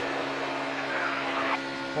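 NASCAR Cup race car pushrod V8 engines at racing speed, heard from an onboard camera as a steady drone that holds one pitch.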